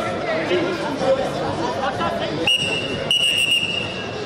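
Referee's whistle blown twice in quick succession about two and a half seconds in, a short blast then a longer one, restarting the wrestling from par terre. Arena crowd chatter runs underneath.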